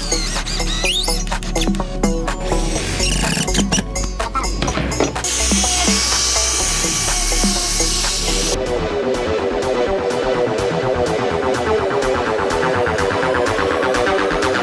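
Electronic background music with a steady beat, with power tools working MDF mixed in. A cordless drill drives screws in the first part, and an angle grinder with a sanding disc runs for about three seconds past the middle, then stops. A fast electronic pattern carries the rest.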